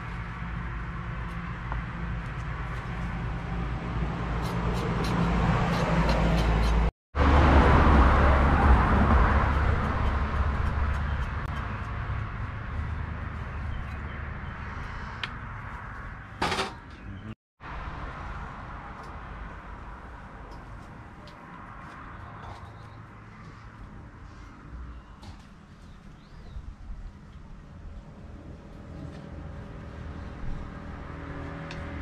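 A motor vehicle's engine running close by, a steady low hum that grows louder to a peak about eight seconds in and then fades away slowly.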